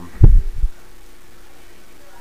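Low, muffled thumps hitting the microphone in a few quick pulses about a quarter-second in.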